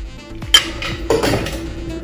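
Metal bar tools clinking as a cocktail is double-strained: one sharp metallic clink with a short ring about half a second in, then a softer clatter, over background music.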